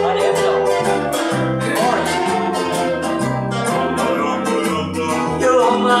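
Live band instrumental break: an electric guitar plays a lead line with a few bent notes over a strummed rhythm and a walking bass guitar. The lead vocal comes back in right at the end.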